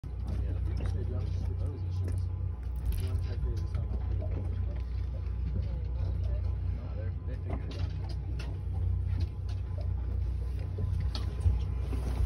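Steady low rumble of Mercury outboard engines idling, with indistinct voices talking over it.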